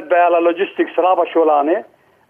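Only speech: a man talking over a telephone line, his voice thin and narrow. He stops near the end.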